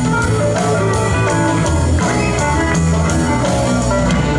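Live band music: an instrumental passage led by guitar over a steady bass line and drums, between sung lines of a blues-style song.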